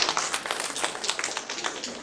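Audience clapping: dense, irregular hand claps, with voices mixed in.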